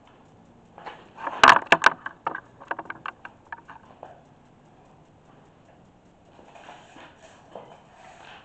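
A quick cluster of sharp knocks and clicks, the loudest about one and a half seconds in, followed by lighter irregular ticks for about two seconds.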